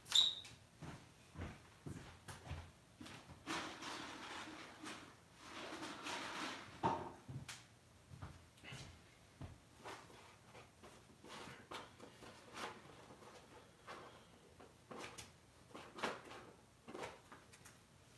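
Faint, scattered clicks and taps with a stretch of soft rustling around the middle: small handling noises at a table.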